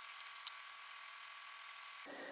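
Faint, quiet handling of soft cookie dough as hands press and roll it into a ball, over a steady hiss, with one small click about half a second in.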